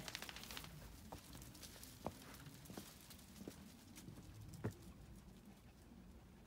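Faint footsteps on wooden garden boards as small dogs trot along: a quick patter of claw clicks in the first second, then a few single sharp taps spaced about a second apart.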